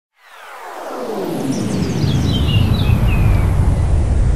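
Logo intro sound effect: a deep rumble swelling up from silence into a loud, steady roar, with falling sweeps early on and a few falling high glides near the middle.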